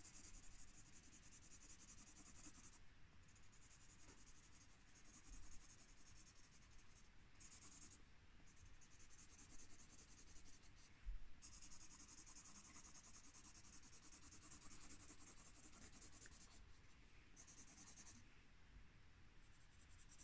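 Felt-tip marker scribbling back and forth on paper as a shape is coloured in, a faint rapid scratching that stops briefly several times when the pen is lifted.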